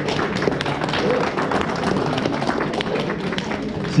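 Audience applauding, a steady patter of many hands clapping at once.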